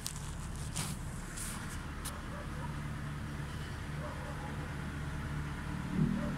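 A phone being handled: a few knocks and rubs on the microphone in the first two seconds, over a steady low hum.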